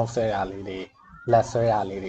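Only speech: a man talking, with a short pause about a second in.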